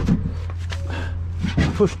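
A man's voice, with the word "push" near the end, over a steady low hum.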